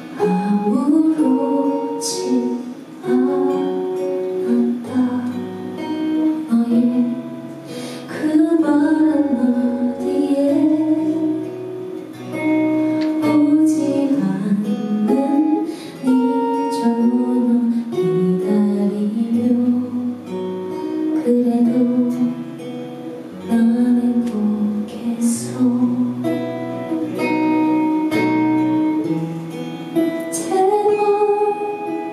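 A woman singing a song live into a handheld microphone, accompanied by strummed and plucked acoustic guitar.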